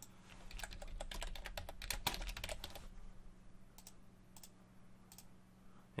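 Computer keyboard typing in a quick, dense run for about three seconds, followed by a few separate single clicks.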